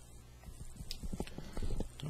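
A string of light clicks and knocks of dry-erase markers being handled, set down and picked up.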